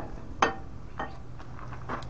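Three light metallic clicks, the first about half a second in and loudest, as the inboard brake rotor on a Jaguar XJ6 independent rear suspension unit is handled, over a steady low hum.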